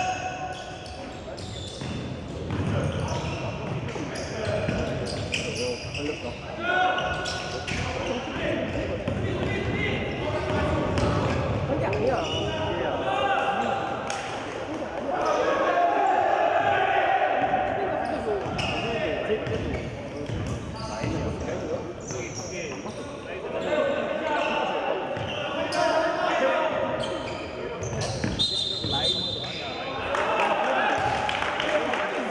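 Basketball game in a large gym: the ball bouncing on the wooden court again and again, with players' shouts and calls ringing around the hall.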